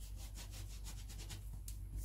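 Round metal dough cutter pressed and twisted through soft rolled-out dough against the work surface: a quick run of short scraping rubs.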